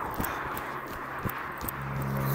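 A runner's footfalls striking the road in a steady jogging rhythm, about three a second. A low steady hum comes in near the end.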